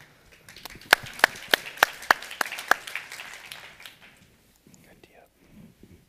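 Brief audience applause with a run of sharp single claps close by, about three a second, dying away after about three seconds.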